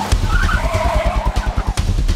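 A car pulling up with a wavering tyre skid, over background music with a fast, even, pulsing low beat.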